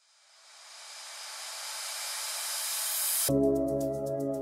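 House music: a white-noise riser swells and grows brighter for about three seconds, then the full beat drops in near the end with bass, chords and fast hi-hats.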